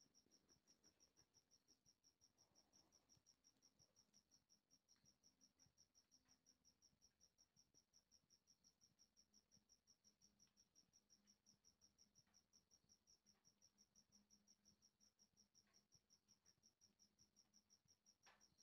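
Near silence, with only a faint, evenly pulsing high chirp of a cricket.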